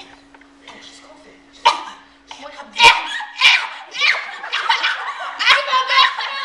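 Several girls shrieking and squealing excitedly, mixed with laughter, the high voices starting loud about three seconds in after a quiet opening with a faint steady hum.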